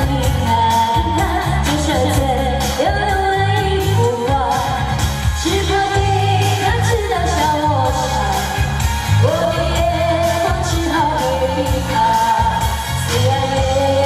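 A woman singing a pop song into a handheld microphone over an amplified backing track with a steady beat and strong bass.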